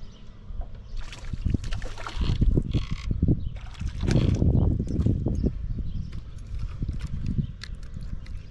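A hooked fish splashing at the surface as it is reeled in and lifted from the water, in bursts about a second in and again around four seconds, over knocks and handling noise on the boat.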